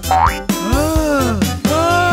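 Cartoon sound effects over background music: a quick rising whistle, then two springy boings that rise and fall in pitch.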